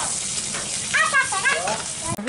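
Food sizzling as it fries in a pan over a clay stove's wood fire, a steady hiss.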